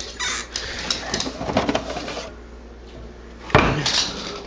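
Cocker spaniel's claws clicking on a laminate floor as he comes over, irregular ticks for about two seconds, then a lull and a single sharp knock near the end.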